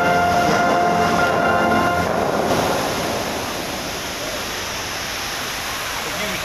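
Orchestral music from the fountain show fades out about two seconds in. It gives way to a steady rushing of water from the musical fountain's jets and spray.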